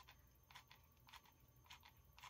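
Near silence with about six faint, scattered clicks from a hot glue gun being worked as glue is laid onto a metal bed spring.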